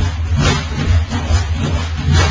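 Folk ensemble music with heavy, steady low drumming and sharp hand-drum strokes a little under a second apart.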